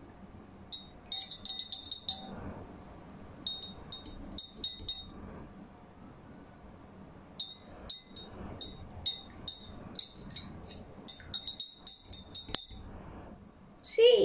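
Metal spoon stirring liquid soap into water in a drinking glass, clinking against the glass in several runs of quick, ringing taps with short pauses between them.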